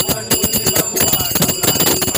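Brass hand cymbals (taal) struck in a fast, steady rhythm, their metallic ringing carrying between strikes, with drum beats beneath.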